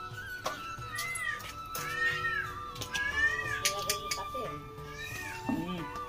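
A cat meowing several times, short rising-and-falling calls about once a second, over background music with long held notes.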